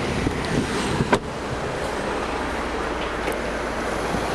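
Wind rumbling on a handheld microphone, with one sharp knock about a second in.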